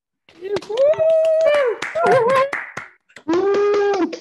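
A few people cheering with long, high whoops while hands clap in a small scattered applause, with a laugh about two and a half seconds in.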